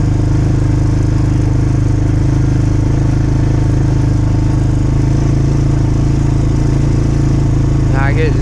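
Small off-road vehicle engine running steadily at a constant speed while dragging a shot hog.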